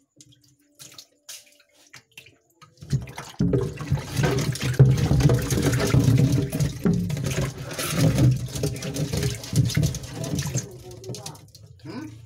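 Water poured from a plastic container into a shallow turtle tub, splashing and gurgling onto the water surface. It starts about three seconds in, runs steadily for about eight seconds and tails off near the end.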